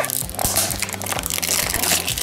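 Clear plastic shrink wrap crinkling and crackling as it is peeled off a small cardboard box, over background music.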